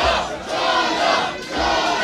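Wrestling crowd chanting and shouting together, the sound swelling and falling in a rough rhythm; the crowd is backing one of the wrestlers.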